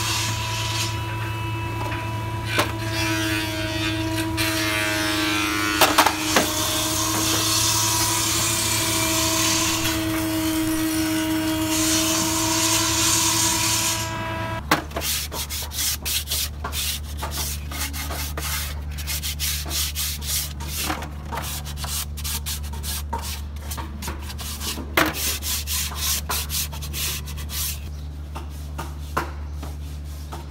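Hand-sanding a painted wooden box frame: rapid scratchy rubbing strokes back and forth along the wood. A steady hum runs underneath and changes to a lower pitch about halfway through.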